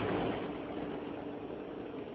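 Steady road and engine noise heard from inside a moving car, easing a little in the first half second as the car's windows are closed.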